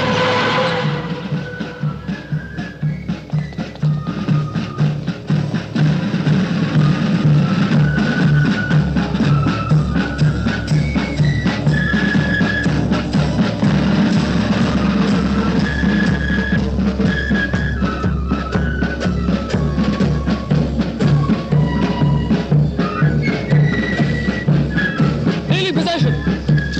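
Military marching band playing: drums keep a steady march beat under a high-pitched melody of short held notes.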